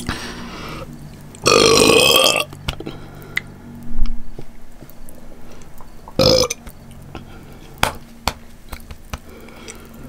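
A woman burping: one long burp about a second and a half in and a shorter one around six seconds in. A low thump about four seconds in, and a few faint clicks between.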